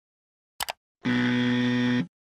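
Outro sound effects: two quick clicks, then a steady electronic buzz lasting about a second that stops abruptly.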